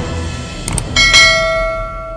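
Subscribe-button animation sound effects: a short click about two-thirds of a second in, then a bell ding about a second in whose ringing tones fade slowly. The end of the background music runs beneath, fading out.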